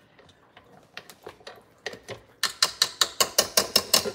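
Wire whisk attachment of a KitchenAid stand mixer being handled and worked off its shaft. A few scattered clicks come first, then a rapid run of sharp metal clicks, about seven a second, through the second half.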